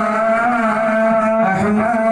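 A single voice singing the slow opening of an Arabana song in long, held notes that waver slightly in pitch.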